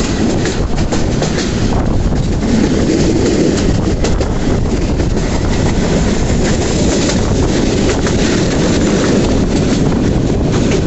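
Passenger train running, heard from an open coach window: a steady, loud rumble of the wheels on the rails with clatter over the rail joints.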